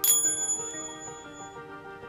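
A small bell chimes once with a sharp, high-pitched strike and rings out over about a second and a half, over soft background music with held notes.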